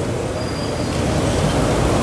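Steady background noise: an even low rumble with hiss, no distinct events.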